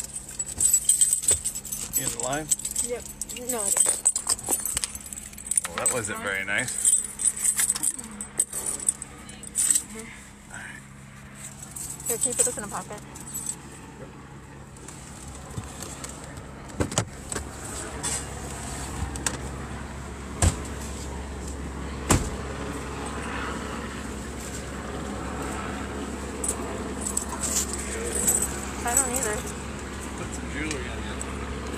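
Inside a car cabin: a busy run of rattling and clicking with bits of indistinct voice over the first half. A steady low engine-and-road rumble then builds as the car rolls slowly along, with faint voices and a couple of sharp knocks.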